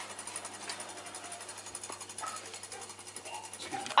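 A kitchen appliance running with a steady low hum and a fine, fast rattle, with a couple of faint clinks; the hum cuts out just before the end.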